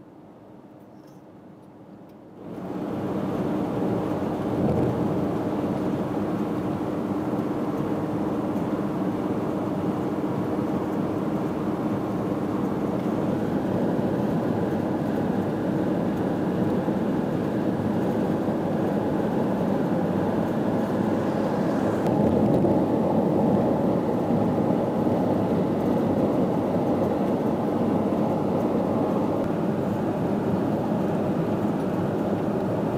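Steady road, tyre and engine noise inside a moving car's cabin, cutting in suddenly about two and a half seconds in after a quieter stretch.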